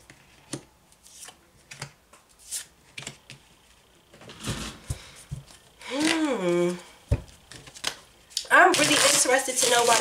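Tarot cards being handled and dealt onto the table: a string of light, separate card snaps and slaps, then a brief shuffling rustle about four seconds in. Past the middle a woman's voice makes a drawn-out sound that rises and falls, and speech begins near the end.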